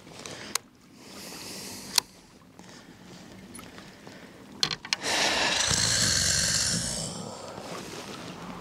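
Clicks and knocks of a fishing rod and reel handled in a kayak, then about two seconds of water splashing and rushing, from about five seconds in.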